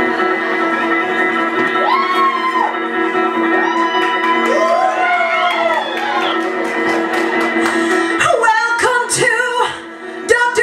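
Live electric guitar holding a sustained ringing chord while voices whoop and call out over it in sweeping rising-and-falling cries. About eight seconds in, the guitar switches to short, choppy strummed chords.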